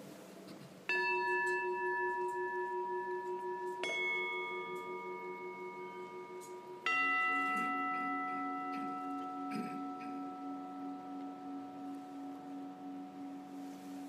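A bell struck three times, about three seconds apart, each stroke ringing on with a slow, pulsing decay: the bell rung at the elevation of the consecrated Host.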